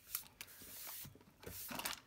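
A hand sliding across a gridded paper craft mat, a faint soft brushing, with a light tap near the start and a few small clicks near the end.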